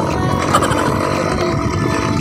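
Motorcycle running steadily while riding along a rough gravel track, with wind rumbling on the microphone.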